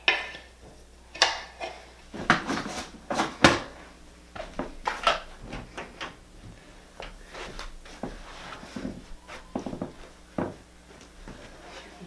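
Toys and small household objects being handled: a run of sharp knocks and clatters, loudest a couple of seconds in, then lighter scattered taps and clicks.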